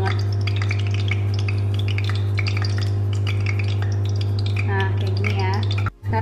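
Light rustling and small ticks of a thin spring-roll wrapper being folded by hand against a ceramic bowl, over a steady low hum. The sound cuts out abruptly for an instant near the end.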